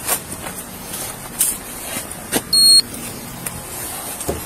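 A short, loud electronic beep about two and a half seconds in, over scattered knocks and rustle from the wearer of a body-worn camera moving about.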